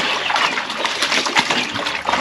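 Clothes being scrubbed and worked by hand in a plastic basin of soapy water, the water sloshing and splashing irregularly.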